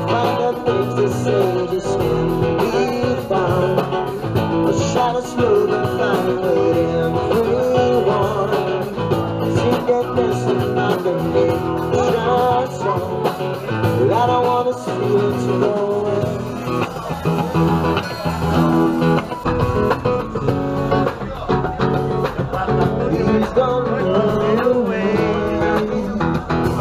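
Live band playing: electric guitar over a drum kit, with a steady cymbal beat.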